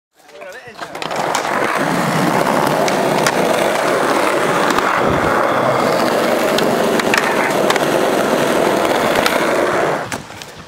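Skateboard wheels rolling over rough concrete, a loud steady rolling noise with scattered small clicks from cracks and grit. It builds up over the first second.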